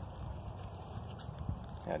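Low, uneven rumble of wind buffeting the microphone, with a few faint ticks. A man's voice starts right at the end.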